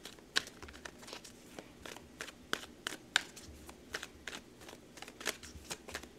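A deck of tarot cards being shuffled by hand, the cards slipping and snapping against each other in a run of irregular soft clicks, a few of them sharper.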